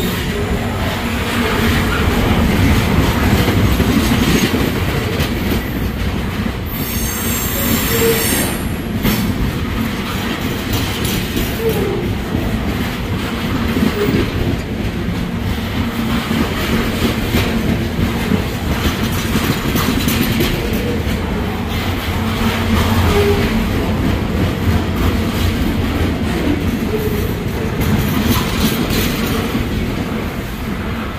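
A string of high-side open-top freight gondola cars rolling past at close range: a steady noise of steel wheels on rail. A brief high-pitched squeal comes about seven seconds in.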